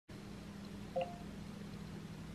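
Quiet room tone with a steady low electrical hum, broken about a second in by one brief, short pitched blip.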